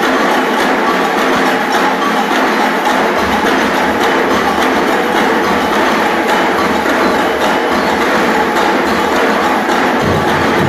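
Live percussion ensemble of many drums playing together in a dense, continuous rhythm.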